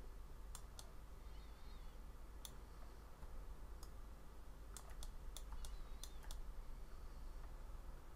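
Faint, scattered clicks from computer input devices while working at a desk: a few single clicks early, then a quick cluster of about eight between five and six and a half seconds in, over a low steady hum.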